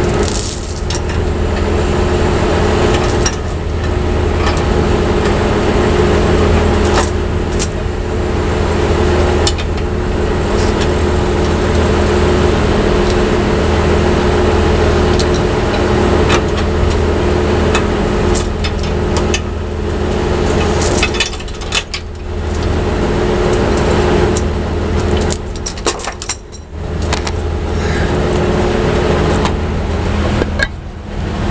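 Heavy truck engine idling steadily, with scattered sharp metallic clinks and clicks of tow chain and hooks being handled against the steel frame and crossbar.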